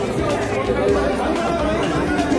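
Speech: people talking, with background chatter.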